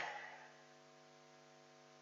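Near silence with a faint steady electrical hum, after the echo of a voice in a church dies away in the first half second.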